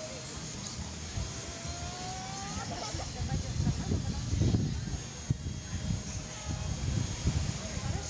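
Wind buffeting the microphone in a low, uneven rumble that gusts stronger from about three seconds in, with faint indistinct voices in the background.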